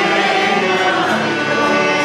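A small group of people singing a hymn together, holding each note before moving to the next.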